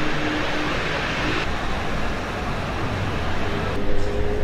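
Steady rumble of road traffic, with a faint slowly rising tone coming in shortly before the end.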